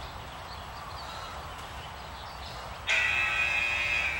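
A sudden steady buzzing beep about a second long near the end, of the kind an interval timer gives to mark the end of a 45-second work interval, over a low steady rumble.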